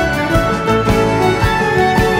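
Live instrumental band music led by a violin melody, with cello and piano over a steady beat.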